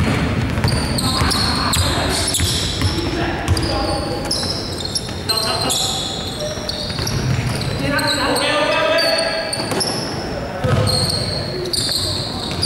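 Indoor basketball play in a sports hall: a basketball bouncing on the wooden court, sneakers squeaking in short high chirps, and players calling out.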